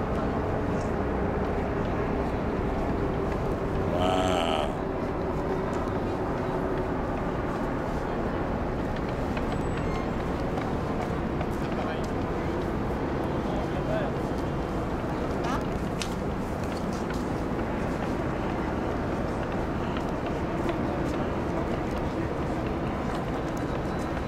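Steady outdoor background noise with indistinct chatter of people nearby; one voice stands out briefly about four seconds in.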